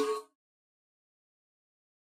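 A singing voice fades out on the last held note of a phrase within the first third of a second, followed by total silence.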